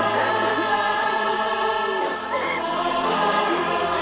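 Background music: a choir singing long held notes.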